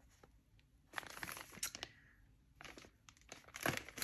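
Clear plastic wrapping crinkling as a packaged digital license plate is handled, in short rustles: one about a second in and a few more near the end.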